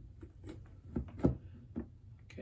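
Plastic clicks and knocks of an AC power plug being pushed into an extension cord socket, a handful of short knocks with the loudest a little over a second in.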